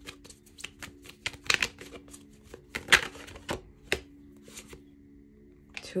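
A deck of tarot cards being shuffled and handled: a run of irregular crisp card flicks and snaps, the loudest about three seconds in, then a lull of about a second before more card clicks as cards are drawn and laid down.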